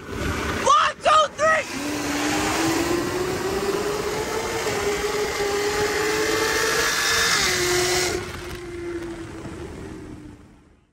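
Cars accelerating flat out in a roll race: a steady engine and wind roar with an engine note that climbs slowly for about five seconds, then drops a little and holds as they ease off near the end. About a second in there are three short shouts.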